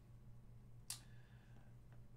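Near silence with a low steady hum, broken by a single light click about a second in as a trading card is handled.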